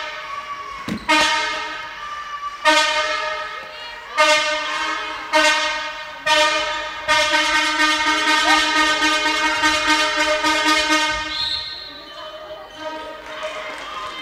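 Spectators' fan horns blowing in a handball hall: a run of loud blasts starting about a second apart, then one long held blast that fades out near the end.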